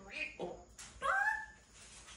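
African grey parrot talking in a mimicked human voice, saying "루이 오빠" ("Rui oppa"). Its loudest syllable is a gliding, whistle-like note about a second in.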